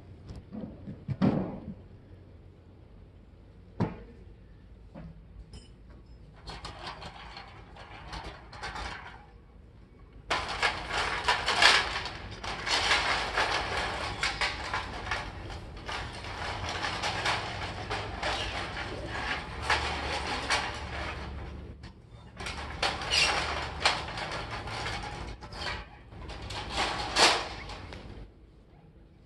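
Rustling and crackling in long stretches, starting about ten seconds in and breaking off briefly near the end, as a long colourful object is rubbed and shaken against a saddled pony in desensitizing work; a few soft knocks come before it.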